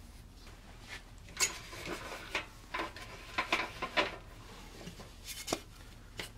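Pieces of wood being lifted, moved and set down on a wooden workbench top: a scattered series of knocks and clatters, with light scraping between them.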